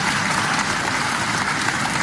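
Audience applauding: a steady, dense patter of clapping from a snooker crowd, heard through the replayed TV broadcast.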